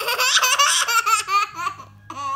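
A two-and-a-half-year-old girl laughing loudly: a burst of quick, high-pitched ha-ha pulses that starts suddenly and trails off after about a second and a half.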